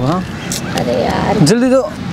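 People talking, with a noisy stretch of about a second between the words.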